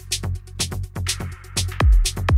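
Electronic progressive/melodic house music. The pounding kick drum drops back briefly, leaving hi-hats ticking at about two a second and a swelling wash of noise. The full kick returns near the end.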